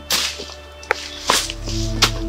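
Two sharp swishes about a second apart, from a cutlass swung to clear bush. They sit over a music score that swells with a low sustained drone about a second in.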